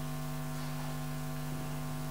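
A steady electrical hum, low and even, with no other sound over it.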